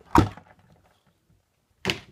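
Sharp plastic clack of interlocking toy bricks snapping apart as the top of a brick-built tank is pulled off, with another short click near the end.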